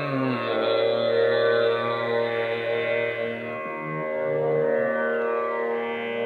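A male Hindustani classical vocalist sings a slow bada khayal phrase in Raag Bihag over a steady drone. His voice glides downward in the first second and then holds long, drawn-out notes.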